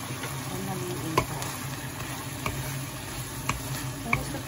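Sayote strips and shrimp sizzling in a nonstick pan as they are stirred, with three sharp clicks of the spatula against the pan.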